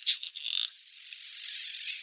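Ear-cleaning instrument working in the ear canal: a few short crackling bursts, then a steady, thin, high hiss that slowly grows louder.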